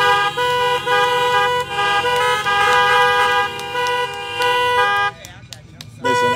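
Several car horns honking at once in long, overlapping blasts, sounded as applause, cutting off about five seconds in.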